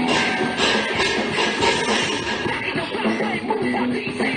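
Background rock music with a steady, dense mix.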